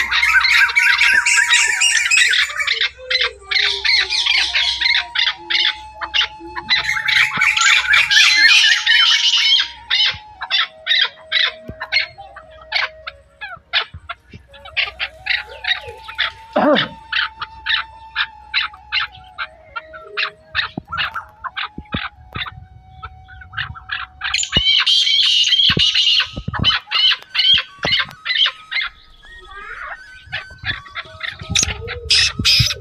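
Birds calling and chattering: several loud, dense bursts of high-pitched calls with rows of quick, sharp chirps in between.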